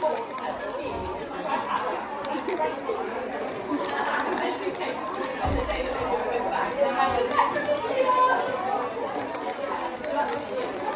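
Indistinct chatter of several voices in a room, with the crinkle of wrapping paper being handled.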